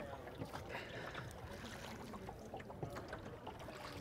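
Faint splashing and dripping of oars working the water as a small wooden rowboat is rowed, with a few light clicks.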